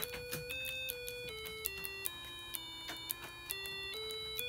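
An Arduino Uno's tone() output through a small speaker: a run of buzzy electronic notes stepping down the scale and back up as keyboard buttons are pressed. Each note holds without a gap until the next button, because the default noTone() case is commented out, so the last tone keeps playing.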